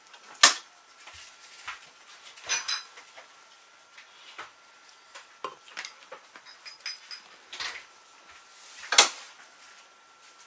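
Cutlery clinking now and then against plates and a glass jar during a meal, as a spoon and a fork are used at the table. The two sharpest clinks come about half a second in and near the end, with a few light taps in between.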